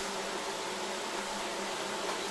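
Steady background hiss with a faint low hum, even throughout, with no distinct knocks or stitching rhythm.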